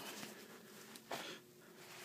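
Faint rustling as a crinkly drawstring gi bag is handled, with one brief louder rustle about a second in.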